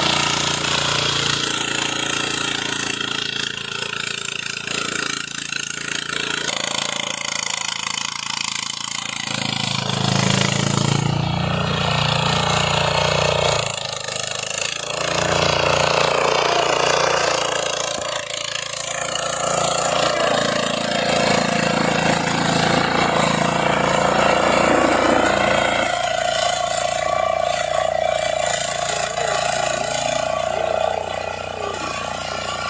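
Power weeder's small engine running continuously, its note and loudness shifting several times as it works.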